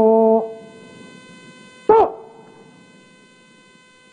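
A brass instrument holds a long, loud note that stops about half a second in, dipping slightly in pitch as it ends. About two seconds in, one short note sounds that rises and falls. After it only a faint steady hum is left.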